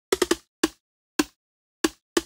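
A sampled water plop from tonic water poured into a bowl, cut short by a fast sampler envelope, triggered as a short pitched 'bloop' six times while its note is moved to find a pitch: three quick hits near the start, then three spaced about half a second apart.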